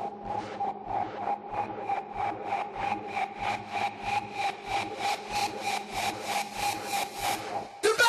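Breakdown of a hardcore gabber track with the kick drum dropped out, leaving a held synth tone chopped into an even pulse of about three beats a second. Just before the end a sudden loud burst leads back into the full track.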